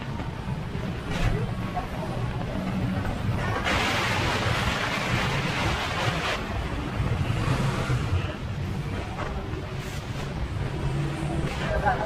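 Busy street background of low rumble and distant voices. A louder rushing hiss swells about four seconds in and dies away two to three seconds later.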